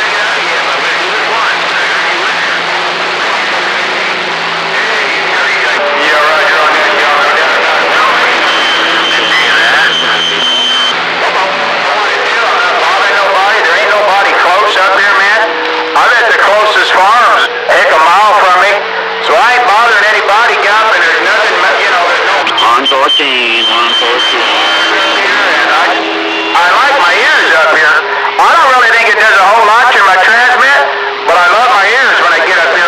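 CB radio receiver on channel 28 with several distant skip stations talking over one another, garbled and warbling. Steady whistles come and go where their carriers clash.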